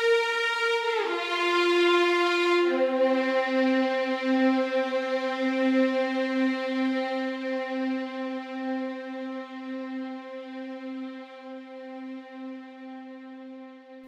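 Sampled legato violin section (Audio Imperia AREIA strings) playing a single line: a couple of notes with slides between them, then one long held lower note from about three seconds in. The held note fades steadily and grows darker as the CC1 mod-wheel dynamics are pulled down.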